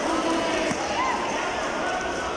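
Crowd of spectators in a large sports hall shouting and calling out over a steady din of voices, with a single thump a little before the middle.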